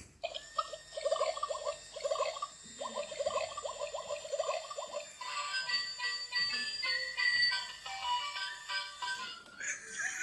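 Electronic toy gun playing its built-in sounds: about five seconds of quick warbling chirps, then a tinny electronic jingle of short beeping notes.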